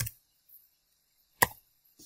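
Computer keyboard keystrokes: two sharp key clicks about a second and a half apart, with a faint tap between them.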